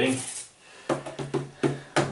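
Short electronic notes triggered by finger taps on the pads of a MIDI pad controller: about five quick notes of similar low pitch, each starting sharply and dying away within a fraction of a second.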